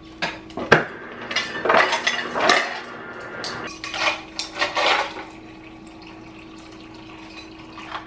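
Refrigerator door dispenser filling a tumbler: ice cubes clatter into the cup for the first few seconds, then water pours in steadily from about halfway through.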